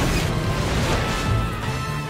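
Cartoon sound effect of a rickety plane's landing gear slamming into the dirt: a sudden crash at the start, then continuous rumbling and scraping as it ploughs along, with music underneath.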